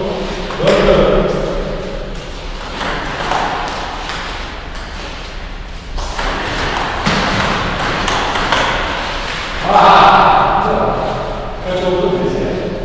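Table tennis rally: the ping pong ball clicking off the rubber paddles and bouncing on the table in quick, irregular succession.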